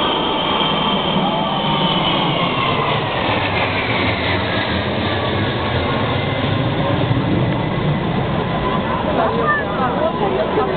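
Jet engine noise from a formation of a large four-engined military transport and four escorting fighters passing low overhead: a high whine that falls in pitch over the first few seconds as the aircraft go by, with a low rumble swelling in the middle. Crowd chatter runs underneath.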